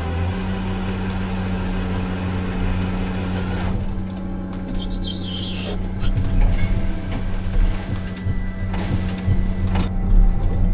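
Timber harvester's engine and hydraulics running, heard from inside the cab as a steady low hum and rumble. From about six seconds in it grows louder, with heavy low knocks and rumbles as the felling head works the tree.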